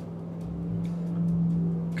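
Low rumble of machinery from nearby building works, swelling from about half a second in over a steady hum.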